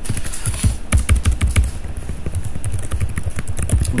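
Fast typing on a computer keyboard: a steady run of key clicks, thinning briefly in the middle.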